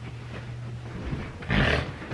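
A person's short breathy groan about one and a half seconds in, over a steady low hum.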